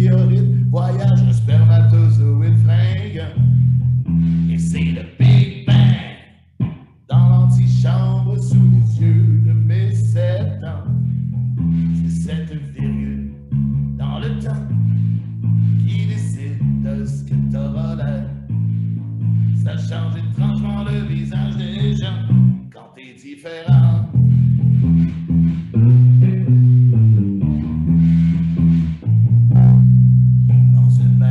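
A man sings a French song to the accompaniment of a solo electric bass guitar alone. The bass plays a repeating line of low notes, with two brief breaks, one about six seconds in and one near the two-thirds mark.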